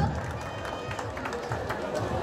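Outdoor crowd of spectators talking and murmuring, with faint overlapping voices and no single loud event.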